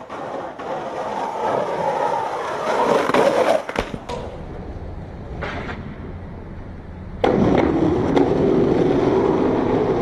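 Skateboard wheels rolling on rough street and concrete, the rumble building over the first few seconds and then cutting off. A quieter stretch follows with a single sharp knock, then loud rolling starts again about seven seconds in.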